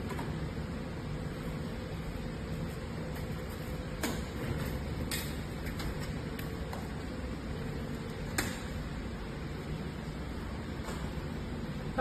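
Photovoltaic panels of a mobile solar light tower being slid out on their metal frame, with a few sharp clicks about four, five and eight seconds in. A steady hum with a faint steady tone runs under it.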